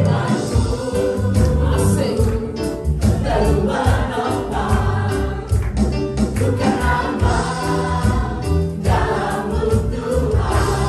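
Live worship song sung in Indonesian by two women on microphones, backed by a band with keyboard and drums keeping a steady beat.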